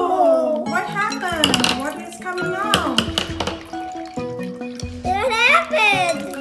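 A young girl's excited, high-pitched exclamations over steady background music, with a few sharp clicks and red water splashing from a punctured ziploc bag into a glass bowl.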